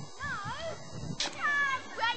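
A child's high-pitched voice making two sliding, meow-like calls: the first wavers up and down, and the second, about a second in, starts sharply and falls in pitch.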